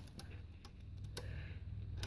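A few faint, light clicks spread over about two seconds, over a low steady hum.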